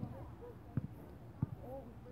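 Quiet outdoor moment with three soft knocks, roughly evenly spaced, and faint murmured voices; no hiss or burning from the flare is heard.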